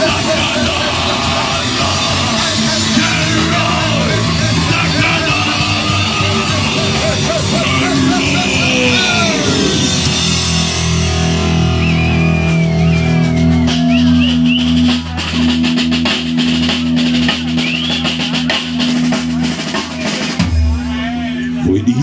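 Live rock band playing at full volume with drum kit, guitars and vocal lines; about halfway through the song winds down into a long ringing final chord held over continued drum hits, which breaks off near the end.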